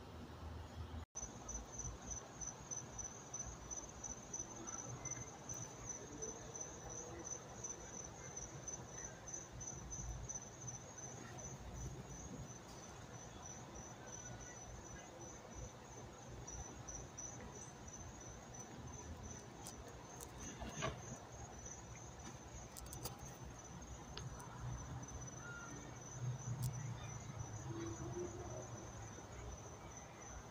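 Crickets chirping: a steady, high, rapidly pulsing trill that carries on unbroken, with a single faint click about two-thirds of the way through.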